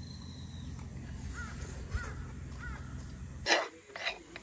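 A bird calling three times with short arched calls over a steady low rumble, then a loud clatter of a metal spoon against a wooden bowl near the end as the bowl is scraped.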